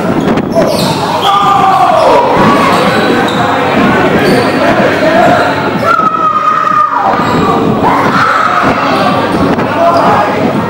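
Dodgeballs thrown, hitting players and bouncing on a wooden sports-hall floor in a rapid, irregular run of knocks, with players' voices in a large hall.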